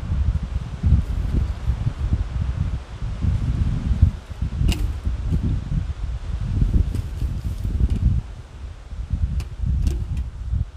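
Wind buffeting the microphone in an uneven low rumble, with a few sharp clicks of wire and pliers as the wire is bent and twisted, the sharpest about halfway through.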